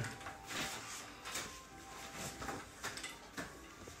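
A quiet stretch with a few faint soft clicks and rustles, as hair and a small plastic hair clip are handled close to the phone's microphone.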